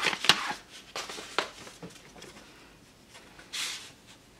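Handling noises at a wooden box: a few sharp light taps in the first second and a half, then a brief soft papery rustle near the end, as a certificate card is taken out and handled.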